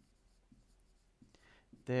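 Dry-erase marker writing on a whiteboard: faint scratching strokes. A man's voice starts just before the end.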